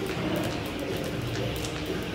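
Jump rope ticking against the gym floor in a steady rhythm of about two to three strikes a second, over a steady low hum.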